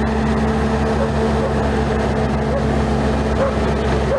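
Diesel engine of a piece of road-building machinery running steadily at an unchanging pitch, a constant low drone.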